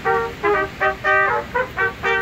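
A brass quartet of two trombones and two trumpets playing a Christmas carol in short, separated notes, about four a second.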